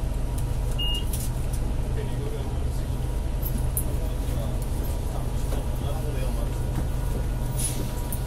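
Steady low rumble of a city bus's engine and road noise, heard from inside the passenger cabin.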